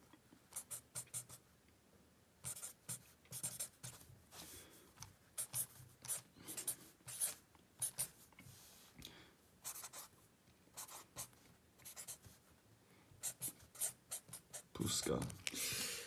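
A pen writing on a notebook page: runs of short scratching strokes in quick bunches, with brief pauses between words.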